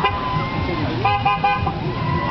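Vehicle horn honking a rapid string of short toots about halfway through, over the rumble of passing traffic and voices.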